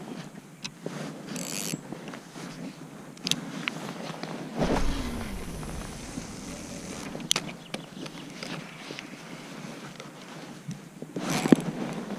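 Rustling and scraping as clothing and fishing gear are handled, with a few sharp clicks scattered through and a brief low rumble about halfway.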